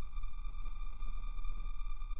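A steady electronic tone, several pitches held at once over a low hum, added as the soundtrack to an animated title card.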